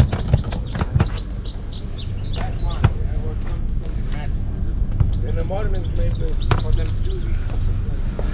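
A small bird chirping, a quick run of high, falling notes about a second in and a few more calls later, over a steady low background rumble with a few scattered knocks.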